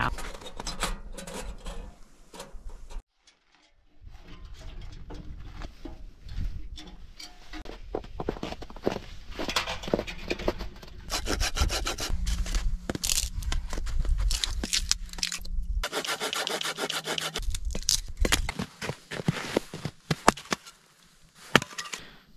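Hand saw cutting firewood into kindling, in rapid repeated back-and-forth strokes, with a brief pause about three seconds in.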